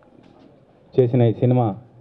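A man speaking into a hand-held microphone: a pause, then about a second in two drawn-out syllables with a falling pitch.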